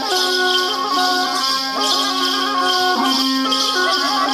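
Traditional Warli tribal folk music. A reedy wind instrument plays a stepping melody over a steady held drone, with a continuous shaking of rattles.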